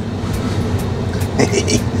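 Steady low hum in the driver's cab of a Newag Impuls electric multiple unit standing at a platform, with a brief faint sound about one and a half seconds in.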